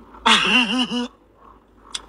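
A woman's voice making one drawn-out, wavering vocal sound, its pitch rising and falling several times, lasting about a second.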